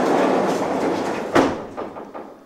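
A heavy door scraping and rumbling as it is pushed open, with one sharp knock about a second and a half in, then a few lighter clicks as the sound fades.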